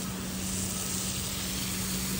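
Garden hose spray nozzle hissing steadily as its spray hits wet soil around young plants, with a low steady hum underneath.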